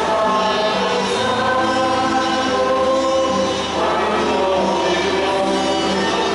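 Choir singing a hymn in long held notes that move from one pitch to the next every second or two.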